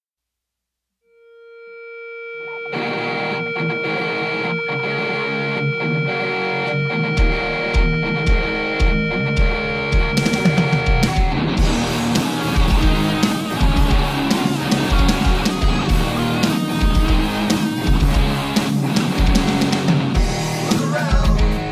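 Instrumental opening of a distorted-guitar alternative rock song. After about a second of silence a single sustained note swells in, the band comes in under it nearly three seconds in, and a bass drum beat joins around seven seconds. The band gets fuller and louder from about eleven seconds.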